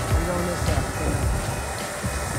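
Low rumble of a boat engine idling beside a dock, with wind buffeting the microphone and faint voices of people nearby.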